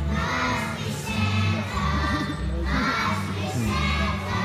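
A choir of young children singing together over accompaniment music.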